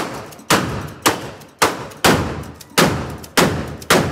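A run of eight loud, sharp strikes, roughly two a second and slightly uneven, each ringing out briefly before the next.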